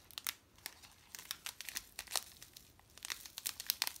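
Thin packaging crinkling as it is handled: tea sachets and a plastic bag being handled, giving a scattered run of short sharp crackles.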